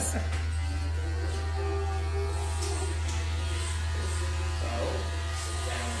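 Electric hair clippers running with a steady buzz during a haircut.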